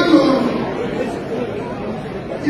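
Audience chatter: several people talking at once, loudest in the first half second.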